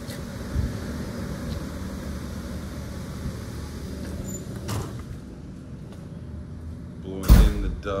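Small portable electric fan running steadily, a whir of moving air with a faint low hum, easing off in the second half. A single knock about five seconds in.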